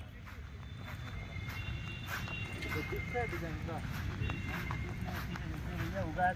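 Faint distant voices over a low outdoor rumble, with scattered light clicks and knocks.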